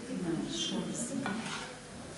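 Kitchen handling noises: a small aluminium pot set down on a stone countertop with one sharp knock, among light scraping and rustling of utensils and pastry.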